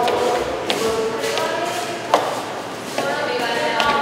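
Indistinct voices in a hallway, with a few sharp taps and one louder knock about two seconds in.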